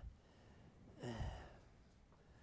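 A man's short, low, breathy sigh about a second in, voiced and quiet, between pauses.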